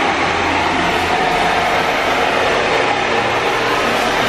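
Hand-held hair dryer blowing steadily, a loud even rush of air over a freshly shaved head.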